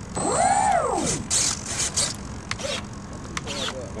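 Electric motor of an RC model jet briefly throttled up and back down: a whine that rises and falls again within about a second. A few light clicks and knocks follow.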